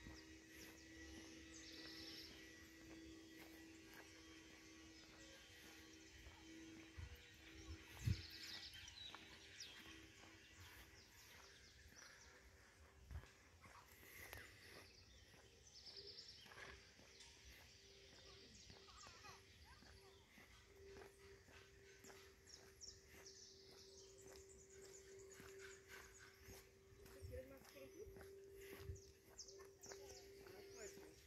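Quiet park ambience near silence: faint footsteps on paving, occasional faint high chirps and a low steady hum, with one sharper thump about eight seconds in.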